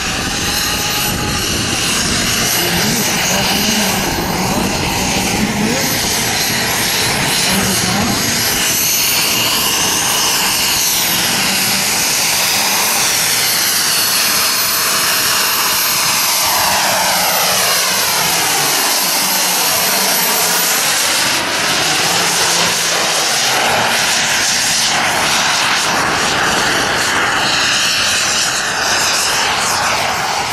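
The gas-turbine engine of a large radio-controlled F-16 model jet running steadily at high power, with a thin high whine on top. As the jet passes close by in the middle, its sound sweeps down and back up in pitch.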